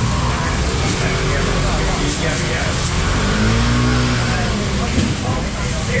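A motor scooter engine passing close by, its pitch rising and then falling about halfway through.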